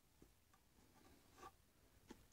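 Near silence: room tone, with a couple of faint soft ticks.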